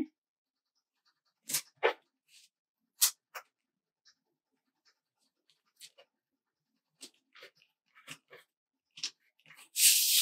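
A sheet of planner stickers being handled on a desk: a few short, separate paper clicks and taps, two of them louder about a second and a half in, then fainter scattered ticks later on.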